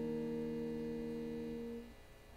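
An electric guitar's last chord ringing on and slowly dying away, fading out near the end: the close of the song.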